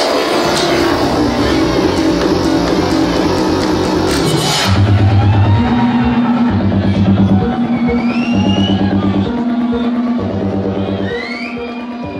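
Loud electronic dance music. About five seconds in the drums and cymbals drop out, leaving a pulsing synth bass line with gliding high synth tones, which then fades out near the end.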